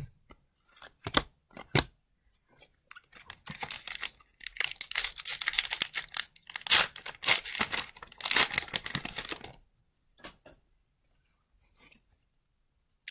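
A few light clicks of cards being handled, then several seconds of crinkling and tearing of a foil trading-card pack wrapper as it is opened. The crackle stops abruptly about two-thirds of the way through.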